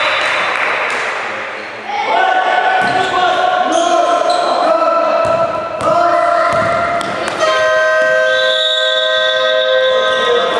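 Basketball bouncing on a gym floor as it is dribbled, in a large echoing hall, under long drawn-out voices calling from the court and the benches, which start about two seconds in and get louder twice.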